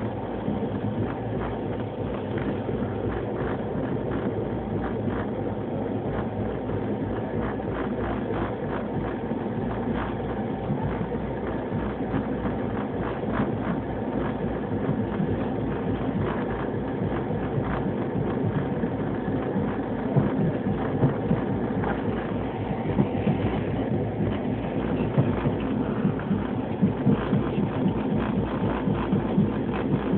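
Express train hauled by a WAP-4 electric locomotive running at speed: a steady rumble with a dense clatter of wheels over the rail joints, louder with sharper knocks in the last third.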